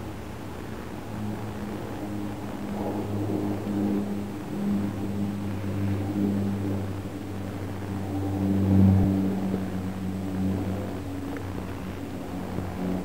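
A motor running with a low, steady hum that swells and fades in loudness, loudest about nine seconds in.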